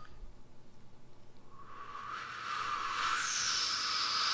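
A man blowing air through pursed lips in a beginner's attempt to whistle, starting about a second and a half in: a breathy hiss with barely any note, growing slowly louder.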